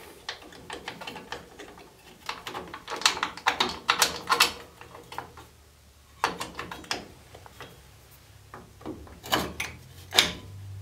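Small steel drum-brake parts clicking and clinking in short clusters as the threaded shoe adjuster is handled and fitted between the lower ends of the brake shoes. A low steady hum comes in near the end.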